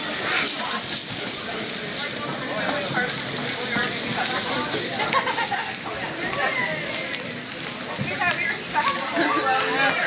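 Hanging strands of beads rustling and clicking against each other as a small child pushes through and swings them, over a background of voices chattering.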